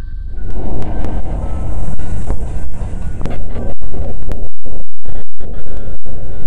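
Loud, distorted rumble with crackles of static, the sound design of a glitchy intro sequence. It cuts out abruptly several times for split seconds about four to five seconds in.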